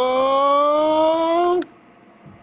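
A man's long, drawn-out "ohhh" exclamation, slowly rising in pitch, that cuts off about one and a half seconds in, followed by faint room noise.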